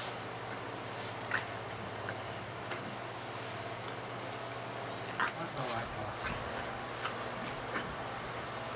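Soft, scattered rustling of straw bedding and a towel rubbing a newborn donkey foal dry, a few brief rustles a second or so apart, over a steady low hum.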